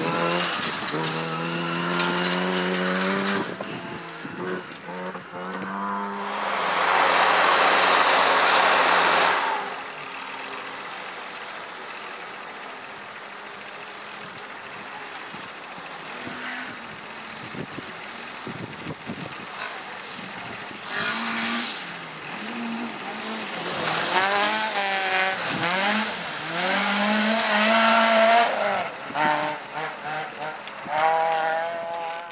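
Rally cars driven hard on a gravel stage, one after another. Their engines rev up and down through gear changes, with a loud rushing burst of gravel and tyre noise about seven seconds in. After a quieter stretch in the middle, an engine revs hard again near the end.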